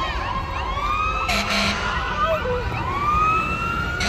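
Emergency vehicle siren wailing, its pitch sweeping slowly upward twice and levelling off. A short hiss-like burst sounds about a second and a half in.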